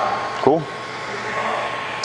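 Steinel electric heat gun running: a steady blowing hiss with a thin, steady whine through it.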